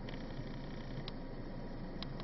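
Empty tank cars of a freight train rolling away on the rails, a steady low rumble of wheels on track with a faint high tone over it. A single sharp click about a second in.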